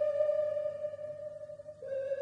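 Background music: one long, held electronic note with overtones that fades, then a slightly lower note comes in near the end.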